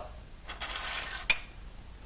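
Hands handling gear on a workbench: a soft rustling scrape, then one sharp click a little over a second in.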